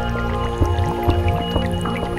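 Electronic psybient music: sustained synthesizer chords over a pulsing bass line, with short plucked synth blips scattered through it.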